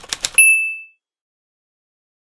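A short run of quick clicks, then about half a second in a single bright electronic ding with a high ringing tone that fades out within half a second, followed by dead silence.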